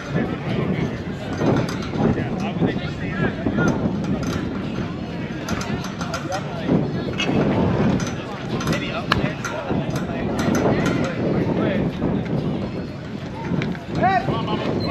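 Unintelligible voices of softball players and onlookers talking and calling out, with a single sharp crack about nine seconds in.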